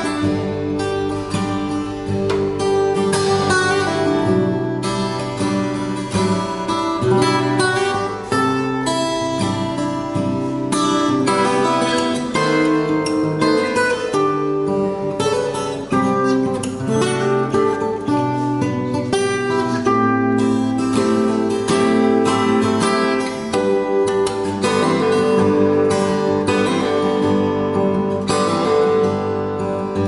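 Solo acoustic guitar made by the luthier Mancini Guitars, played fingerstyle: a continuous piece with bass notes moving beneath a plucked melody.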